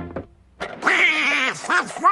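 Cartoon music breaks off, and after a brief pause a cartoon character lets out a rough, squawky cry, followed by high-pitched chattering, voice-like syllables.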